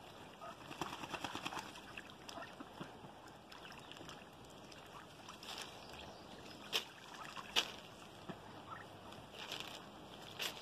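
Ducks bathing in a plastic kiddie pool of fresh water: a patter of small splashes and sloshing water, with two louder, sharper splashes a little past the middle.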